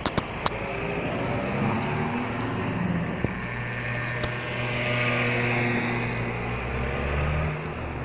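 Street traffic passing: the engine hum of a car and a motor scooter driving by, loudest in the second half and dropping away near the end. A few sharp clicks at the very start.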